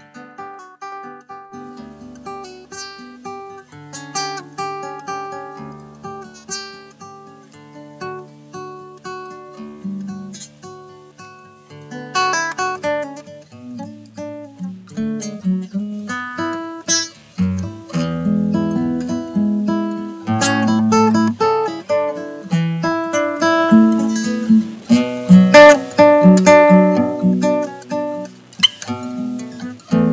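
Solo classical guitar fingerpicked, a melody over plucked bass notes. It starts soft and grows louder and fuller, with ringing chords, from about twelve seconds in.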